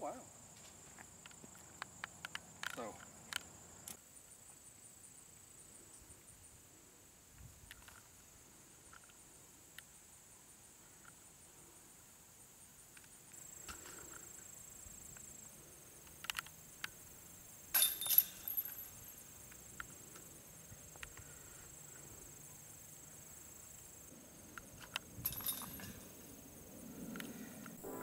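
A disc striking the hanging chains of a metal disc golf basket about two-thirds of the way through, a short metallic rattle and the loudest sound here. Around it, scattered light clicks over a faint steady high insect buzz.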